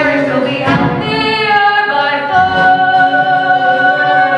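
A woman's voice singing a show tune from a stage musical: a few short notes, then one long held note from about halfway through.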